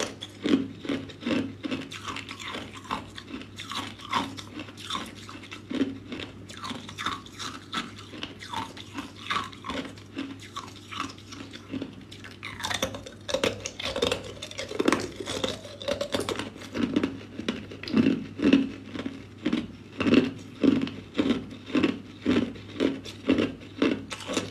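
Clear ice cubes being bitten and chewed: steady, rhythmic crunching of ice between the teeth, with a sharper crack of a fresh bite into the ice block a little past halfway.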